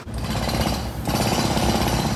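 Loud machine noise with a fast, even pounding beat, starting abruptly.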